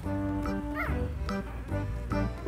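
Background music, over which a three-day-old Thai Bangkaew puppy gives a short high whimper that rises and falls once, just under a second in.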